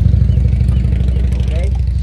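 An engine running steadily at idle, a low drone with a fine, even pulse, under faint voices.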